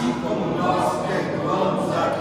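A group of voices praying aloud together in unison, the many voices blending like a choir.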